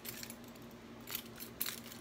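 Faint, scattered clicks of keys on a leather key holder as it is turned over in the hands.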